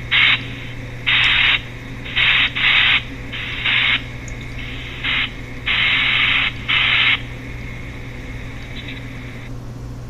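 Chopped pink noise from a phone app: bursts of hiss switched on and off in irregular chunks of about half a second, thin and bright as from a small speaker, over a steady low hum. The bursts stop about seven seconds in, leaving a fainter hiss that cuts off near the end.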